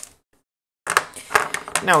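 A short stretch of dead silence, then light clicks and knocks as a small mains transformer and a plastic project box are picked up and handled on a desk, under a man's voice.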